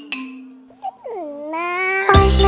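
The last note of a descending xylophone-like run, then a short pitched chirp and a single drawn-out cartoon vocal sound whose pitch dips and then slides slowly upward.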